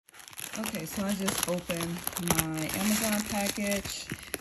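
A plastic mailer bag crinkling as it is handled and a book is pulled out of it.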